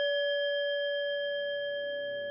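A single struck bell, such as a meditation bell or singing bowl, ringing on with a clear steady tone and slowly fading. Soft, low sustained music tones come in about a second in.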